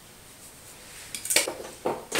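Clatter of hard makeup cases knocking together as they are rummaged through and picked up: a few sharp clicks and rattles in the second half, after a quiet first second.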